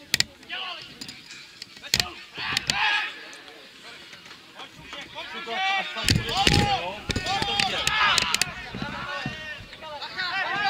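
Football players shouting to one another across an outdoor pitch, loudest about six to nine seconds in. Two sharp thuds of a football being kicked come just after the start and about two seconds in.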